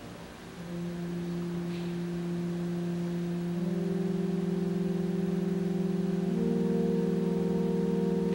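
Organ holding a soft sustained chord that builds as notes are added one after another, first under a second in, then about halfway through and again near the end.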